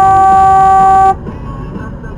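A single long car-horn blast, one steady tone that cuts off abruptly about a second in, over the car's road noise.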